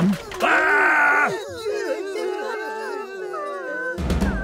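Animated cartoon characters' voices: a loud strained cry about half a second in, then from about a second and a half several voices groaning and whimpering at once.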